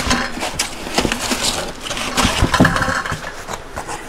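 Cardboard and foam packaging scraping and crackling as a foam-padded carbon-steel kayak rack piece is pulled out of its shipping box, with irregular knocks and a few heavier thuds a little past the middle.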